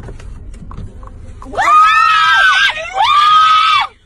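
A person screaming twice in a high pitch. The first scream starts about a second and a half in and rises then falls. After a short break the second is held steady and cuts off just before the end. Low steady background noise comes before the screams.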